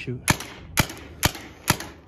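Paintball marker firing four shots, about two a second, each a sharp pop.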